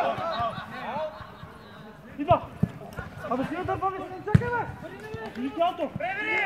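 Shouts and calls from several men on a mini-football pitch, voices overlapping, with two sharp thuds about two seconds apart from the ball being kicked.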